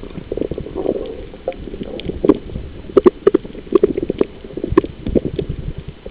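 Muffled water movement picked up by a camera underwater, with many irregular knocks and clicks, thickest from about three to five seconds in.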